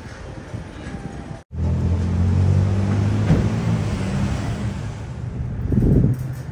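City street traffic noise, broken off abruptly about a second and a half in, then a nearby motor vehicle's engine running with a steady low hum.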